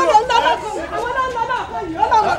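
Speech only: voices talking, with no other sound standing out.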